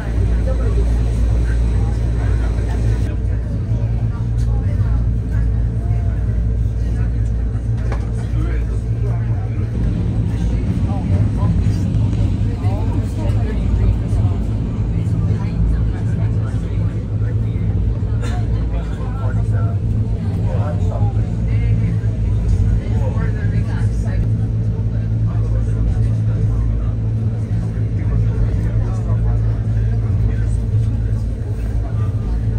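Steady low rumble and hum of a train running, heard from inside the passenger carriage, with passengers talking over it.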